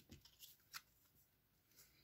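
Faint handling of a tarot deck: a few soft, short card clicks in the first second as a card is drawn from the deck.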